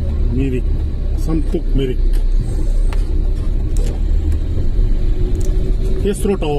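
Moving vehicle's engine and road rumble, continuous and steady, with a steady engine tone in the second half. Short bits of talk come through in the first two seconds.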